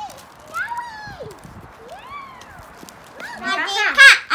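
A young girl's high voice calling out in three separate rising-and-falling whoops of glee, then excited children's chatter near the end.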